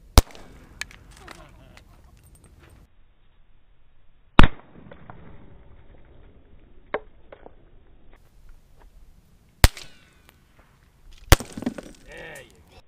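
Four sharp gunshots spaced several seconds apart, the second (about four seconds in) the loudest, with a few fainter clicks in between.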